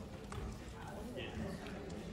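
Faint murmur of voices in a large room, with a few light clicks.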